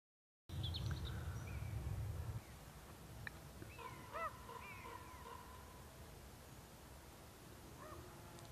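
Faint outdoor nature ambience that starts suddenly about half a second in: a low rumble for the first couple of seconds, with scattered bird calls, a few short chirps early and a cluster of arched calls about four seconds in.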